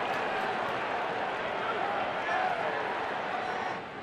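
Ballpark crowd murmur with scattered distant voices, dropping to a quieter murmur near the end.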